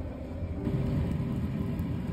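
Steady low rumble of food-truck kitchen noise with a faint hum, getting louder about half a second in.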